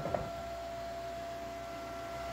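Quiet room tone: a steady low hum with a thin, steady high-pitched tone over it, and one faint click just after the start.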